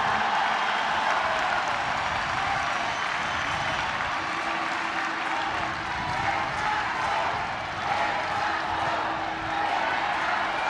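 A huge open-air crowd applauding and cheering, a steady wash of clapping and voices.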